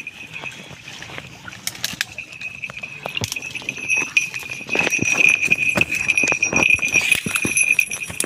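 Dry branches and twigs rustling and crackling as a leather falconry glove pushes through dense scrub, over a steady high-pitched ringing drone that grows louder about halfway through.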